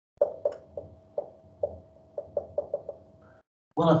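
Dry-erase marker tapping and clicking against a whiteboard while writing out a word: about ten short, sharp taps, irregularly spaced and coming faster in the second half.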